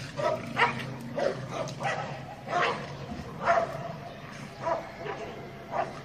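A pit bull and a Bernese mountain dog wrestling, with short barks coming about once or twice a second.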